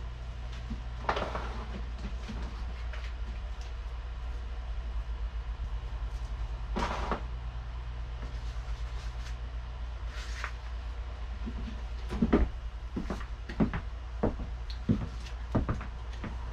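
Rummaging through a storage crate for a record: scattered knocks and clatter of items being shifted, busier near the end, over a steady low hum.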